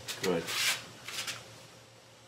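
Two brief rubbing, scuffing noises as a training bumper is handled against a dog's mouth, after a spoken "good".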